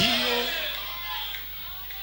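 A short voice sound at the start that fades into quiet hall ambience with a low steady hum.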